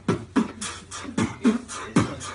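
A man beatboxing into his cupped hands: a steady beat of deep mouth-made kick sounds that drop in pitch, about two to three a second, with crisp hi-hat-like clicks between them.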